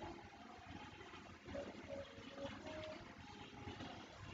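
Quiet room tone: a faint, uneven low rumble and hiss, with a few brief faint tones.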